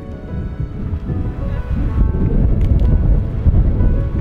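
Wind buffeting the microphone in a loud, uneven low rumble, with background music fading out beneath it.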